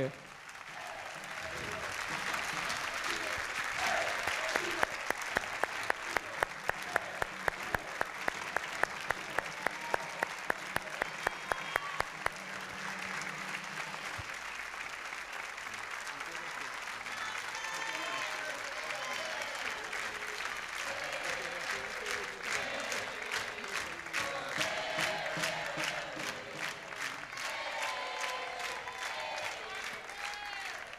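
Studio audience applauding at length. About five seconds in, the clapping falls into a steady unison rhythm of about three claps a second for several seconds, then returns to loose applause with voices in the crowd.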